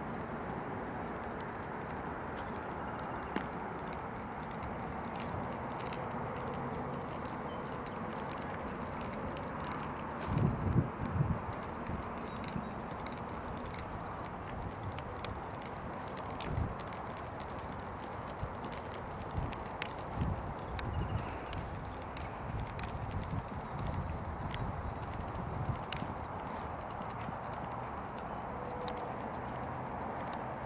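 Hoofbeats of a Rocky Mountain Horse gelding travelling in his ambling saddle gait on a dirt arena, a run of dull thuds that grows loudest about ten to twelve seconds in and again from about sixteen to twenty-six seconds as he passes close by.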